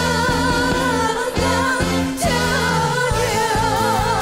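Female vocals singing a trot song over a live band with bass and a steady drum beat; the voice holds long notes with a wide vibrato.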